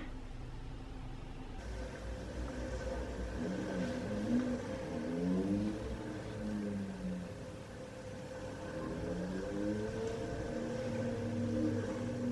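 Low-level engine-like hum: a steady drone with a lower tone that rises and falls several times, as of a motor changing speed.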